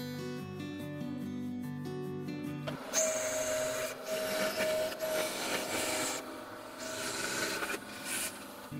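Acoustic guitar music, then from about three seconds in a vertical bandsaw cutting an aluminum plate: a harsh, rasping cutting noise with a steady ringing tone from the blade.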